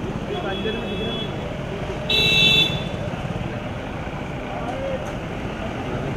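Street traffic noise with a short car horn honk about two seconds in, and a fainter honk near the start.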